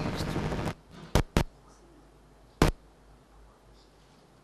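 Loud crackling noise and hum through a PA system cuts off abruptly under a second in, followed by three sharp clicks and then quiet room tone: audio trouble while the sound for a video playback is being connected.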